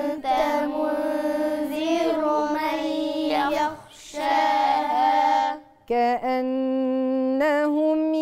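A child chanting Quranic verses in melodic tajweed recitation, with long held notes. The voice breaks off briefly twice, near the middle and just before six seconds in, then resumes.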